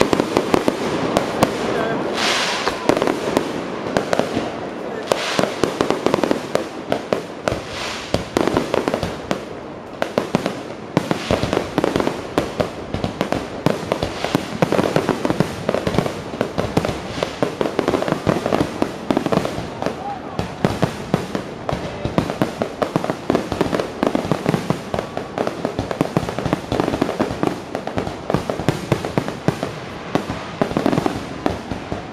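Fireworks display: a dense, unbroken run of crackling and popping from bursting shells, with a few louder bangs in the first few seconds.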